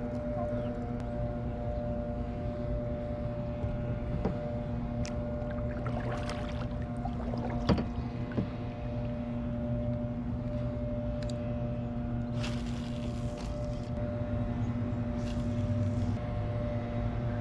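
A steady mechanical hum made of several held tones, with scattered light clicks and knocks and a brief rush of noise about twelve seconds in.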